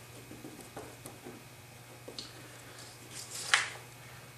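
Wood glue squeezed from a plastic bottle onto paper: faint small squishes and ticks. About three and a half seconds in, a brief paper swish as the glued sheet is lifted.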